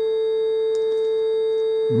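One steady sine test tone from a tone generator, unchanging in pitch and level, heard as it comes out of a pair of GK IIIb speech scramblers with one set scrambling, so the tone is pitch-inverted.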